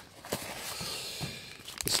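Cardboard box and folded paper instruction sheets rustling and scraping as they are handled and pulled out of the box, with a light tap about a third of a second in and another near the end.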